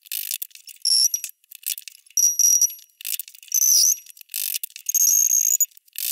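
A hammer tapping a metal punch to knock the lead balance weights out of a wooden piano key: several sharp taps, most leaving a high, bell-like ring from the punch. The sound is thin, with no bass at all.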